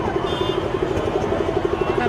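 An engine idling with a steady, rapid throb, heard through a pause in the speech at an open-air rally.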